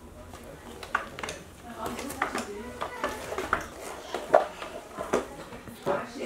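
A toddler's short wordless vocal sounds mixed with a run of sharp clicks and knocks from close to the microphone, the loudest about four and a half seconds in.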